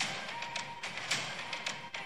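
A film trailer's soundtrack played back: quiet music with scattered soft taps and thuds.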